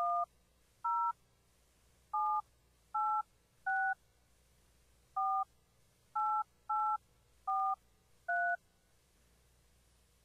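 Telephone keypad touch tones (DTMF): ten short two-note beeps keyed in at an uneven pace over about eight and a half seconds, entering a host PIN at an automated phone-system prompt.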